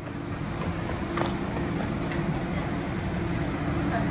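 Steady outdoor street noise of vehicle engines and road traffic with a low hum, fading up over the first second, with two sharp clicks about one and two seconds in.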